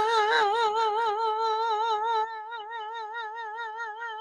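A solo voice singing one long held note with an even vibrato on the word "now", growing a little softer after about two seconds.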